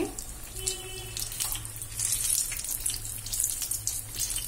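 Mirchi bajji, batter-coated green chillies, deep-frying in hot oil: a steady bubbling, crackling sizzle, over a low steady hum.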